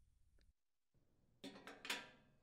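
Metal gas-range surface burner base being set down and seated on the enamel stovetop: near silence, then a few light clicks and clinks in the last half second, the loudest just before the end.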